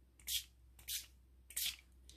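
Hero Arts shimmer spray's pump mister spritzing three times: short hisses a little over half a second apart.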